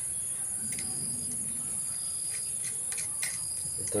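A steady, high-pitched chorus of insects, with a few faint clicks as the brush cutter's steel blade and retaining nut are handled and tightened by hand.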